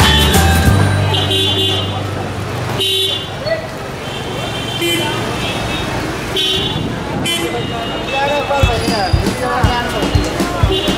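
Busy street traffic: vehicle horns tooting in several short blasts over engines and the chatter of a crowd.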